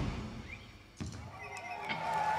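The last chord of a live rock band dies away, with a sharp click about a second in. The first whoops and whistles from the audience follow as cheering starts to build.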